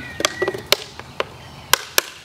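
Lid of a plastic five-gallon bucket being pried off, its rim snapping free of the bucket in a series of sharp clicks about half a second apart.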